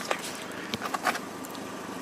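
Toyota Yaris 1.33 petrol engine idling faintly and steadily, with a few soft clicks in the first second.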